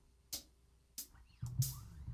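A drummer's count-in on the drum kit: three sharp ticks evenly spaced about two-thirds of a second apart, setting the tempo. Low notes from the rhythm section come in near the end, just before the band starts the tune.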